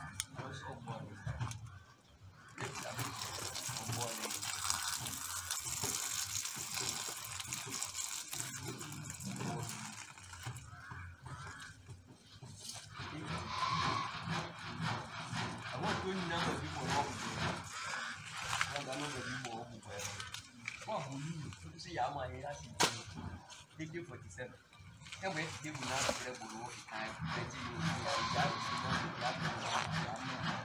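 People talking indistinctly in the background, with one sharp click about three quarters of the way through.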